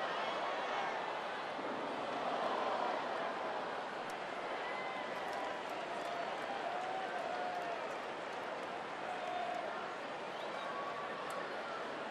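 Ballpark crowd between pitches: a steady murmur of many voices, with scattered distant calls and shouts rising briefly out of it.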